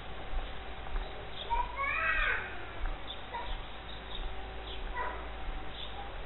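An animal call about two seconds in, a pitched cry that falls in pitch, and a shorter call near five seconds, over a steady outdoor background with small high chirps.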